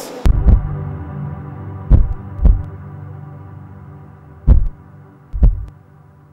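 Heartbeat sound effect: slow double thumps about two seconds apart, three beats in all, over a steady low drone.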